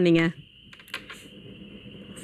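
A voice finishing a sentence, then a pause of faint studio room noise with a few light clicks about a second in and a thin, steady high whine underneath.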